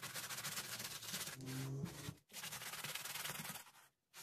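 A brush scrubbing the foamy toothpaste-and-water lather into a sneaker's mesh upper in rapid back-and-forth strokes, with a brief break about two seconds in; the scrubbing stops just before the end.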